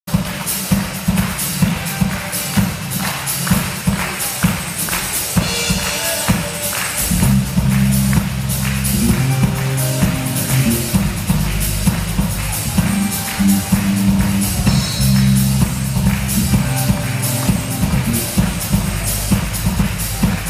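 A live band playing an instrumental intro, with a drum kit keeping a steady beat under acoustic guitars. Low bass notes join in about seven seconds in.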